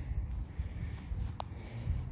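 Outdoor lawn ambience: a low rumble on a handheld microphone carried across grass, with faint insects chirping steadily in the background and one sharp click about one and a half seconds in.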